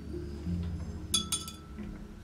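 Soft background music with low sustained notes; a little past the middle, a few quick ringing clinks of a paintbrush knocking against the hard painting gear.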